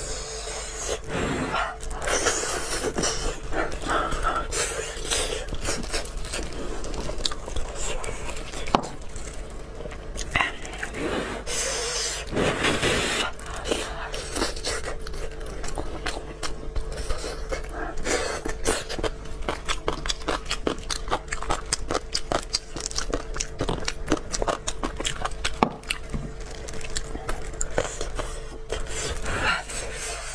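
Close-miked eating of braised pig head: chewing and smacking on meat and skin, a steady run of quick wet clicks, with the squish of meat being torn apart by plastic-gloved hands.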